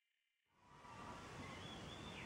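Near silence: dead quiet at first, then faint room tone fading in about a second in.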